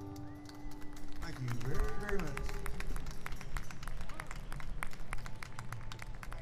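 The last acoustic guitar chord of the song rings out and fades about a second in. Then comes a shout from a voice and scattered hand clapping.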